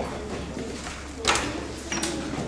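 Sheets of paper being handled at a metal music stand, with one sharp rustle about a second and a quarter in, over a steady low electrical hum.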